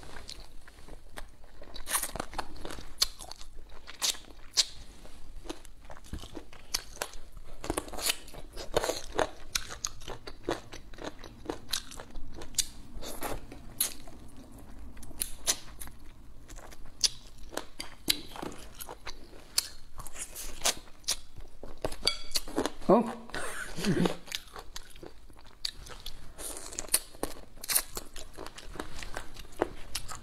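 Close-miked chewing and biting of pickled Sichuan-pepper chicken feet: a steady run of wet crunches and sharp little clicks as skin and cartilage are bitten and chewed.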